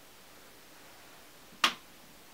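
Quiet room tone, then a single sharp click about one and a half seconds in: a metal-backed eyeshadow pan snapping down into a magnetic palette.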